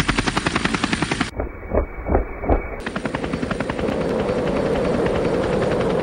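Helicopter rotor chop: a fast, even beat of blade thumps with a steady engine drone under it. About a second in, it turns muffled for a moment, with a few slower, heavier thumps.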